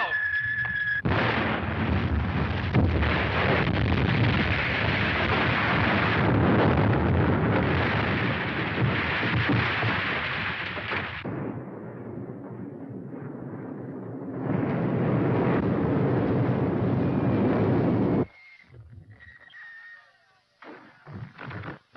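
An incoming artillery shell's whistle falls in pitch and ends about a second in, giving way to a loud explosion. The blast and falling debris rumble on for about ten seconds, ease off, then swell loud again before cutting off sharply near the end.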